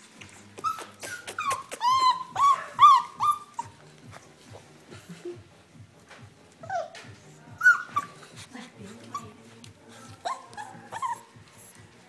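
A Border Collie puppy giving short, high-pitched whimpering cries: a quick run of them early on, then a few more near the middle and toward the end, with sharp clicks and knocks of handling in between.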